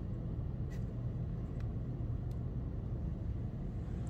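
Steady low rumble of background noise, with a few faint ticks about a second apart.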